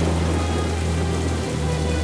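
Film soundtrack: a dark, low sustained music drone holding steady tones, under a steady even hiss of noise that sounds like heavy rain.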